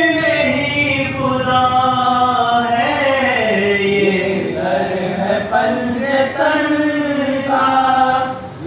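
A young man's solo voice singing an unaccompanied Urdu devotional verse in long held, wavering notes.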